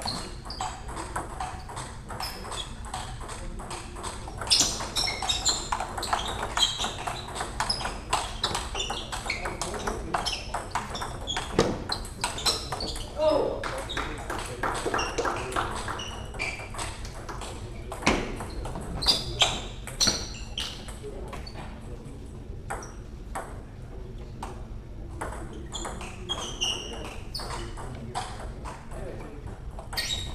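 Table tennis ball clicking back and forth off the bats and the table during rallies. The sharp ticks come in quick runs, with short pauses between points.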